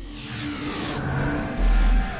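Logo-intro sound effects: a rushing whoosh that sweeps downward, then a deep bass hit about one and a half seconds in, the loudest moment.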